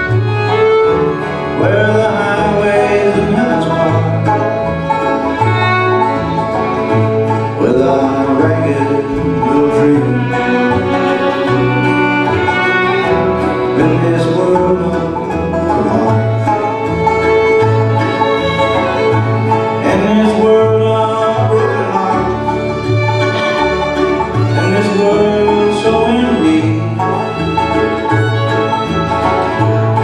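Live bluegrass band playing an instrumental break: fiddle carrying the melody over strummed acoustic guitar, with a steady pulse of bass notes underneath.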